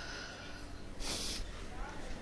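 A single short, sharp breath through the nose about a second in, over a low steady rumble.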